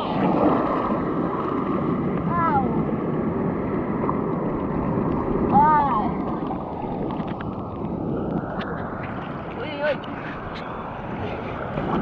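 Sea surf washing and churning around a camera held at the water's surface: a steady rush of water noise. A few short high voice calls cut through it.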